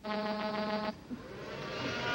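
Electronic buzzing sound effect for a robot servant: a steady buzz lasts about a second and cuts off suddenly, then a whirring hum swells.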